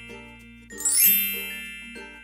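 A bright chime sound effect with a quick rising shimmer rings out about a second in and slowly dies away, over soft background music.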